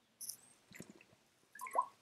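A person sipping and swallowing water: a few short, faint wet mouth sounds.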